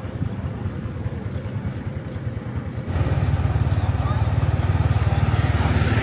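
Motorbike engine running close by, a low, even pulsing engine sound that gets louder about three seconds in and then holds steady.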